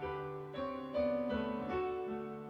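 Digital piano playing a hymn in slow, sustained chords, a new chord struck about every half second.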